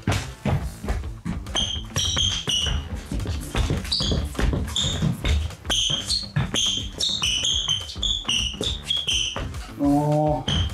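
Clear rubber soles of Nike GT Cut 3 basketball shoes squeaking on a hardwood court as the wearer steps and cuts, a dozen or more short high squeaks from about a second and a half in, mixed with footfalls on the wood.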